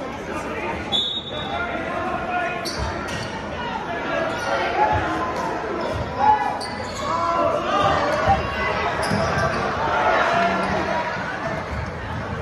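Basketball bouncing on a hardwood gym floor, several separate thuds, the loudest about six seconds in, over the chatter of spectators in a large gym.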